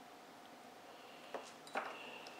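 Low background hiss, then two small clicks in the second half as a bulb and its socket are handled and fitted at a motorcycle tail light.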